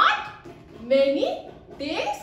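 A woman's high-pitched, sing-song voice in drawn-out, exaggerated calls whose pitch rises and falls, about one a second.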